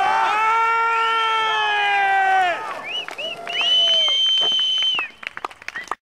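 Friends yelling and cheering for a landed skateboard trick. A long drawn-out shout lasts about two and a half seconds, and a second, higher shout follows about a second later. The sound cuts off abruptly at the end.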